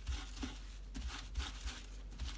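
Crumpled dry kitchen towel rubbed over a stencil in short, uneven strokes, a soft papery rustle and scrub, wiping off ink before a new colour goes on.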